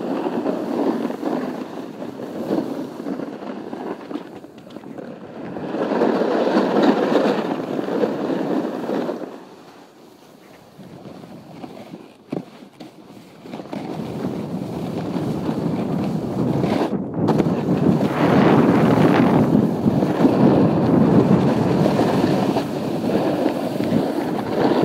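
Snowboard sliding and scraping over packed snow, a rough rushing noise that swells and eases with the turns, dropping away briefly about ten seconds in before building up again, with some wind on the microphone.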